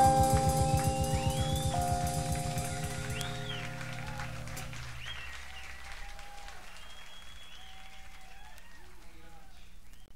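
A jazz-rock band's final held chord dying away over about five seconds on a live recording, with the audience cheering and whistling over it. After the chord ends, only faint crowd noise and whistles remain.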